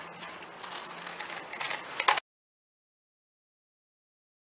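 Scissors cutting through folded card stock: soft rustling with small snipping clicks for about two seconds, after which the sound cuts off abruptly into dead silence.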